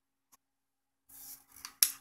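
A plastic LED bulb base being handled on a wooden table: a soft rustle, then a few sharp clicks near the end, the loudest just before the end.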